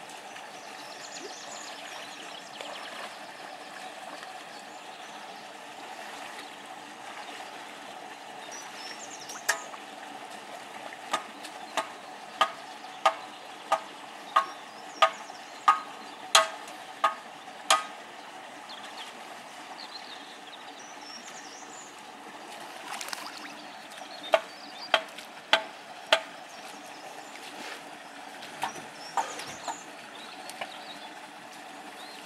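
Steady outdoor background noise with a run of about a dozen sharp, short pitched ticks, evenly spaced at about one and a half a second, about a third of the way in, then four more later and a couple near the end.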